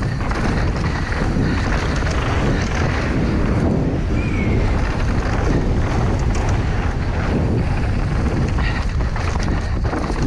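Wind rushing over the onboard microphone of a downhill mountain bike at speed, with knobby tyres rumbling over dry dirt and roots and the bike rattling and clattering over the rough ground.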